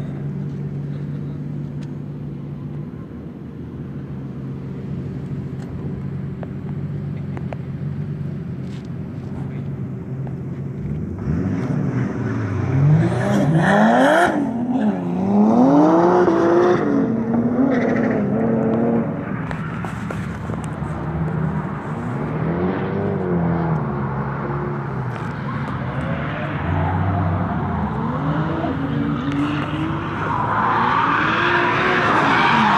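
Drift car engine idling steadily, then revved up and down several times, loudest through the middle, with lighter blips of revving afterwards.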